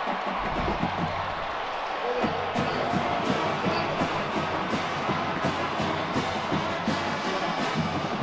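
Stadium crowd noise after a touchdown, with music carrying a steady drum beat, about two to three beats a second, from about two seconds in.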